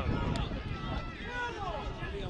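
Several men's voices shouting and cheering at once, players celebrating a goal, over a steady low rumble of wind and outdoor noise. The shouting is loudest at first and eases off after about a second.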